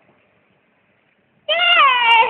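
A toddler's high, drawn-out meow-like call that starts about one and a half seconds in, its pitch sliding down and wavering.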